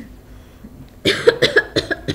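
A woman's coughing fit: a quick run of several harsh coughs beginning about halfway through.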